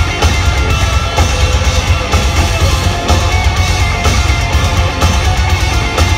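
Heavy metal band playing live at full volume: distorted electric guitars and bass over a drum kit, in a dense, steady wall of sound.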